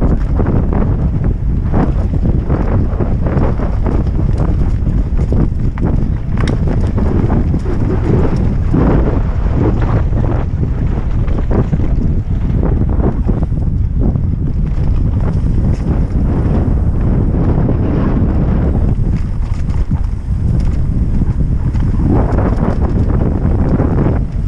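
Heavy wind buffeting the microphone on a fast downhill mountain-bike descent, with the Norco Aurum downhill bike rattling and knocking irregularly over rocks and roots.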